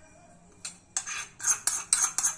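Small iron tempering ladle clinking and scraping against a steel kadai as the garlic-and-asafoetida tadka is emptied into the spinach saag. One knock comes just over half a second in, then a quick run of metal-on-metal knocks about three or four a second.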